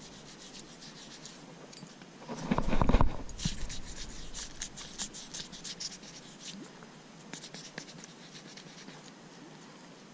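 Close-up handling noise of hands working a spinnerbait and a squeeze bottle: soft rubbing and scratching with small clicks. A louder, deeper bump comes about two and a half seconds in.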